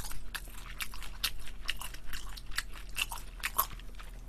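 Close-miked chewing of a bite of battered, meat-stuffed fried chili pepper (gochu twigim): a fast, irregular run of small wet clicks and crunches.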